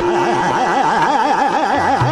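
Fast aakar taan in Hindustani khayal singing: a male voice runs rapid, wavering vowel phrases in Raag Khat, about four or five pitch swings a second. A held accompanying note sounds briefly at the start, and a low tabla bass stroke comes in near the end.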